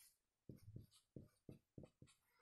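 Marker pen writing: a handful of faint, short strokes starting about half a second in, as a number is written.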